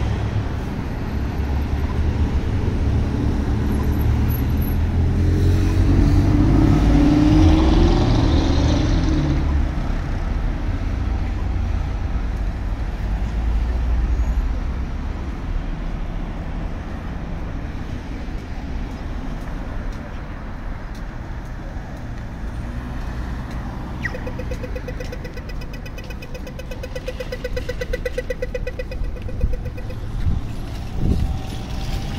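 City road traffic passing through an intersection, with one vehicle passing louder in the first third. In the last few seconds an Australian pedestrian crossing signal changes to walk: a short falling electronic chirp, then rapid ticking.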